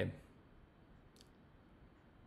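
Quiet room tone after the end of a spoken word, with a single faint, sharp click about a second in.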